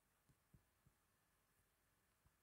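Near silence, with a few very faint, short low taps.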